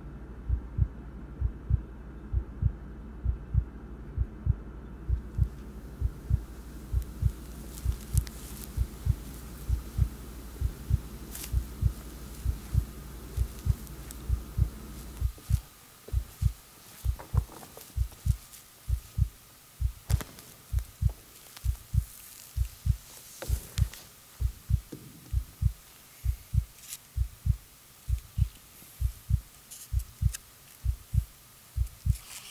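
A slow, steady low thump like a heartbeat, about one and a half beats a second, in a film soundtrack. Under it a low hum drops away about halfway through, and a few faint clicks are scattered over the top.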